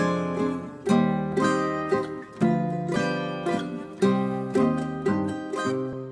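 Background music: notes and chords picked on a plucked string instrument, each one struck and left to ring out.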